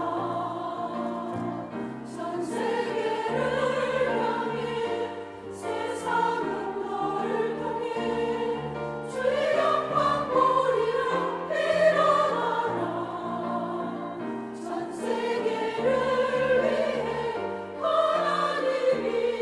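Church choir singing a hymn in harmony on long held notes, with two brief breaks for breath about five and a half and fifteen seconds in.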